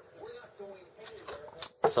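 A few sharp clicks from plastic model-kit parts being handled and fitted, the loudest near the end.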